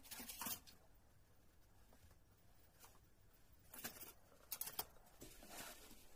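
Faint, brief rustles and clatters of a plastic stencil being lifted off a paper card and handled, in a few short bursts against near silence.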